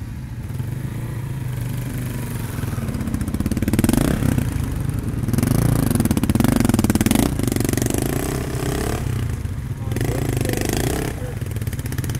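Dirt-bike engines running at idle, with one bike revved up in surges about four seconds in, from about five to seven seconds, and again near ten seconds as it moves off.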